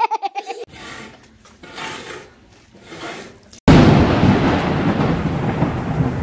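A thunderclap sound effect: a sudden loud crack about three and a half seconds in, then a deep rumble that slowly dies away. A child laughs briefly at the start.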